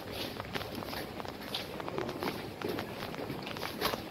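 Footsteps and a luggage trolley rolling over a hard terminal floor, a stream of irregular light steps and clicks, with a sharper knock near the end.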